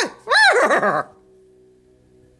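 A high voice sings a short note that rises and then falls in pitch, ending about a second in; faint steady low tones hang on after it.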